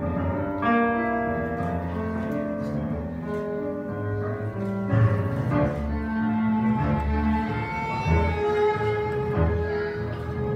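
Argentine tango music with bowed strings, piano and double bass, sustained melodic notes over a marked, accented beat.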